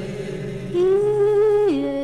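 Voices singing together in a choir-like blend, holding one long note that steps down to a lower held note near the end.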